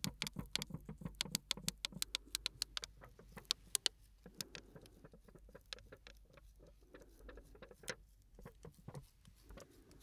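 Small shards of broken glass clicking and crunching inside a small plastic bag, worked between the fingers close to the microphone. Rapid ticking for the first four seconds, then sparser clicks with soft plastic rustling.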